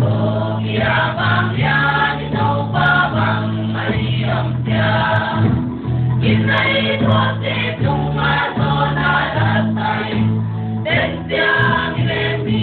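A church choir singing a gospel song in phrases over sustained low accompanying notes, heard from an FM radio broadcast with a dull, narrow sound that has no highs.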